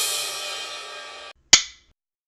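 A cymbal crash that rings and fades for over a second, then, after a short gap, one sharp snap of a film clapperboard that dies away quickly.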